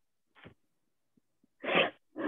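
Mostly near silence, broken by a faint breath about half a second in and a short, breathy burst from a person near the end.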